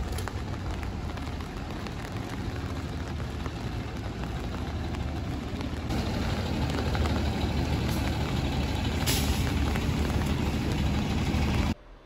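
Outdoor street ambience of vehicle traffic on a rain-wet street, a steady low rumble that grows a little louder about halfway through, with a brief hiss near the end, then cuts off suddenly.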